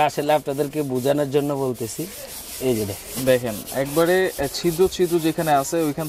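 Hand-held plastic scrub brush scrubbing a floor tile and its grout in quick repeated strokes, working dirt out of the tile's small pits. A man talks over the scrubbing.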